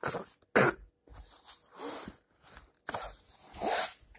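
Coughing in a series of short bursts, the loudest about half a second in.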